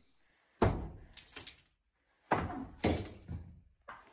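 Sledgehammer striking a plastered dividing wall and breaking it up. There is a sharp blow about half a second in and more blows in the second half, each followed by a short crumble of breaking material.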